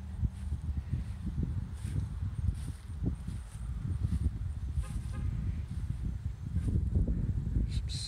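Wind buffeting a handheld camera's microphone as an uneven low rumble, with soft footsteps through grass.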